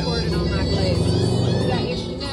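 Indistinct voices of people talking in the background over a steady low hum.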